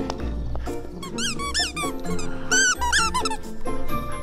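Squeakers inside a giant plush snake dog toy squeak in two quick runs of several squeaks each as two dogs tug on it, over background music.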